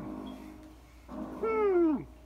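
A single meow about one and a half seconds in, falling in pitch as it ends.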